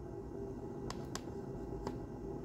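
Three light clicks as folding knives are handled and set down on a mat, over a low steady room hum.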